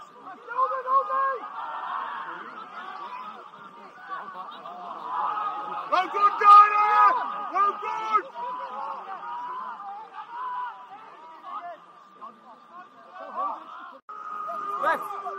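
Voices on and around an outdoor football pitch: scattered calls and chatter with some laughter, and one loud drawn-out shout about six seconds in.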